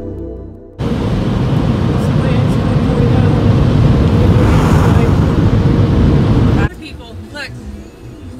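Automatic tunnel car wash heard from inside the car: a loud, steady rush of water spray and spinning cloth brushes on the car's body, starting suddenly about a second in and cutting off abruptly near the end.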